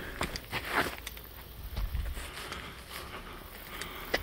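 Footsteps of a person walking on a grassy dirt path, soft irregular steps over a faint low rumble.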